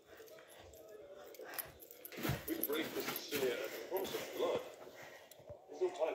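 Faint voices of people talking in the background, with a few soft knocks.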